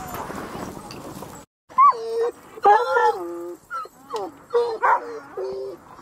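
Sled dogs in harness making a general din of barking. After a sudden break, a dog gives a run of short whines and yelps, each cry dropping in pitch.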